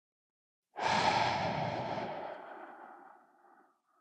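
A long, deep breath out through the mouth during a slow breathing exercise. It starts suddenly about a second in and fades away over about three seconds.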